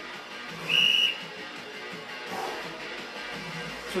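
Background music playing, with one short, high, steady whistle-like tone about a second in.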